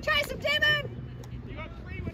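A spectator's loud, high-pitched shout in two quick parts, over in under a second, followed by faint voices from the sideline.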